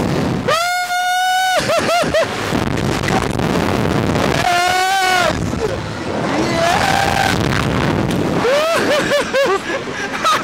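Riders on a Slingshot reverse-bungee ride screaming while the capsule is flung through the air, with air rushing hard over the microphone. A long high scream comes about half a second in, then short yelps, another cry around five seconds in, and a burst of laughter near the end.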